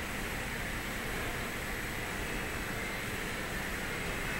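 Steady outdoor background noise: an even hum and hiss with no distinct events.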